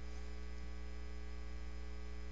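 Steady low electrical mains hum with a few evenly spaced overtones over a faint hiss, unchanging throughout.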